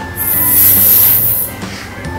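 A child imitating a snake with a long, high 'sssss' hiss that lasts about a second and a half and stops abruptly, over soft background music.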